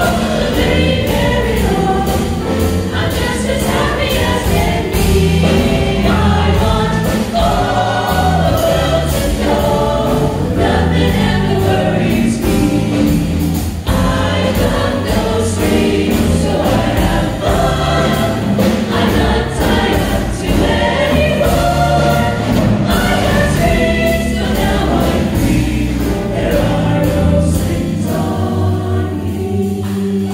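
Mixed-voice vocal jazz ensemble singing into microphones, with a steady bass line underneath.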